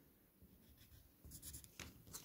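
Faint scratching of a pencil marking a small cross on graph paper, a few short strokes in the second half.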